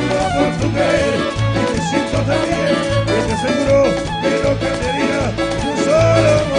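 Live cuarteto band music played loud over the PA, with a steady bass beat pulsing a little more than once a second under melodic lines.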